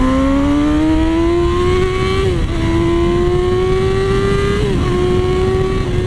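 Yamaha R6 inline-four sport-bike engine accelerating through the gears: the revs climb, drop at an upshift a couple of seconds in, climb again, drop at a second upshift near the end, then hold steady. Wind rushes on the microphone underneath.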